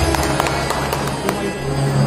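Live devotional music with harmonium and tabla in a brief lull between phrases: the harmonium's held notes drop away, leaving a few light taps and clicks over a low hum, and the held notes come back at the very end.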